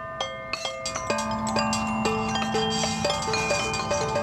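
Outdoor playground percussion instruments, tuned metal chimes and metallophones with drum pads, struck with mallets and played together as a simple tune, the notes ringing on over each other.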